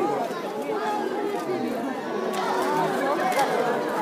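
Crowd of onlookers chattering, many voices overlapping.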